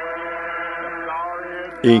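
Congregation singing a hymn, holding one long chord at the end of a line.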